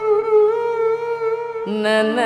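Carnatic music: one long, steady held note, then about 1.7 s in the voice and violin move on to a new note with wavering, oscillating ornaments (gamakas), over a steady tanpura drone.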